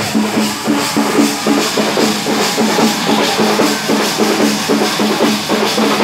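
A street procession drum band playing a fast, steady rhythm on large hand-carried drums.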